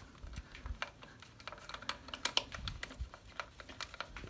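Light, irregular clicks and taps as a Torx T30 screw is turned in by hand to refit the motorcycle's chain guard, with small metal-on-plastic handling noises.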